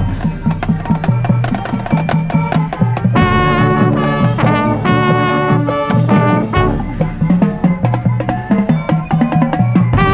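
High school marching band playing a percussion-driven passage: rapid drumline strokes throughout, with held brass chords coming in about three seconds in and again near the end. It is heard from inside the band's ranks.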